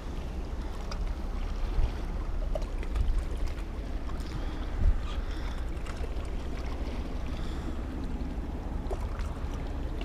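Wind buffeting the microphone in a steady low rumble, over the wash of small waves lapping against the jetty's rocks. Gusts swell louder about two, three and five seconds in.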